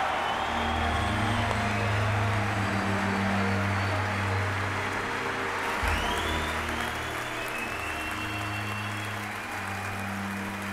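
A large audience applauding over sustained low background music, the applause easing off in the last few seconds.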